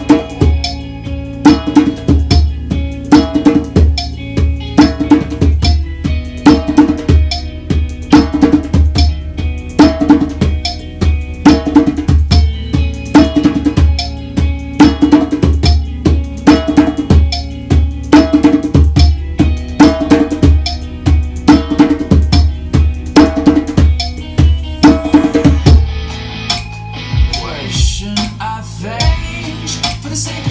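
Djembe played by hand in a steady groove of deep bass strokes and sharper slaps; the playing thins out and stops a few seconds before the end.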